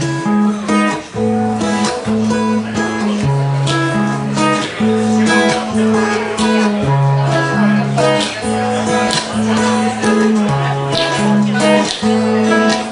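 Acoustic guitar strummed in a steady rhythm, cycling through a repeating chord pattern with a moving bass line: the instrumental introduction before the vocals of the song come in.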